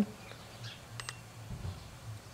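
A single short key-press tick from the TOPDON ArtiLink 201 OBDII scan tool's keypad about a second in, as its down-arrow button is pressed to move through the menu, over a faint low hum.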